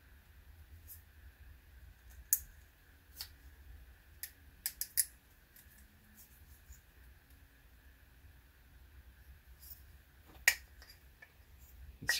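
Scattered light clicks and taps of hands handling a telescope finderscope tube while working a rubber O-ring onto it for a tight fit, with a louder click about ten and a half seconds in.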